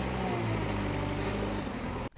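JCB backhoe loader's diesel engine running steadily while the machine works its front bucket.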